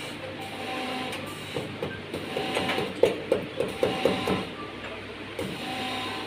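A carved wooden hand-printing block being tapped repeatedly, a quick run of light sharp knocks at about four a second through the middle of the stretch.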